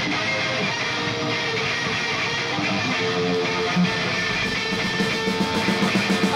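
Electric guitars playing a strummed passage on their own, without drums or bass, in a live rock band performance.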